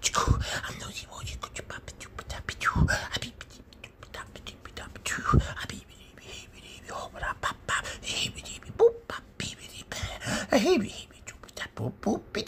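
A hand rubbing a serval's fur right against the phone microphone, giving a dense crackling and scratching, with three breathy puffs in the first half. Near the end come a few soft, wavering murmured vocal sounds.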